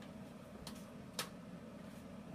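Two light clicks about half a second apart, of a metal utensil tapping the foil-lined sheet pan as broiled meatballs are turned over, over a faint steady hum.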